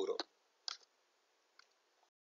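The last syllable of a man's speech, then a single short click about two-thirds of a second in and a much fainter tick near the end, over very quiet room tone.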